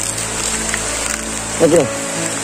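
Heavy rain falling steadily, under background music with low sustained notes.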